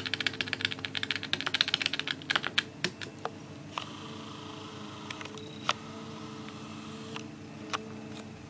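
Keys of a Casio fx-300MS scientific calculator pressed in a rapid run for about three seconds, entering a long string of nines, then a few single key presses spaced out.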